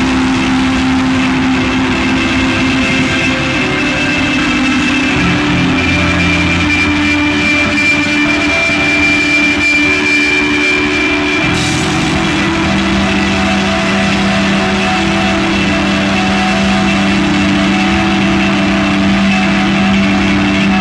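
Loud post-rock band music: distorted electric guitars and bass guitar holding long, droning sustained notes over a dense wash of sound. The chord shifts twice.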